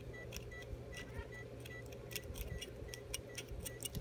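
Steel hand curette scraping and clicking against a dog's teeth in irregular little ticks as tartar is worked off at and under the gumline, over a faint steady hum. There are short high beeps now and then.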